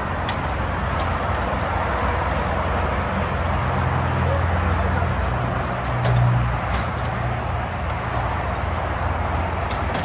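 Steady rush of road traffic below, with a heavier vehicle swelling louder about six seconds in, and a few faint clicks.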